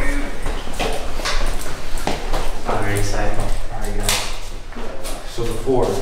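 Footsteps on stairs, with a few sharp steps or knocks, and indistinct male voices.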